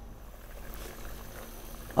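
Pot of vegetable soup boiling on high heat: a soft, steady hiss of bubbling water.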